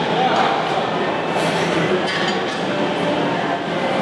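Busy weight-room ambience: indistinct background voices with a few metallic clinks of weights.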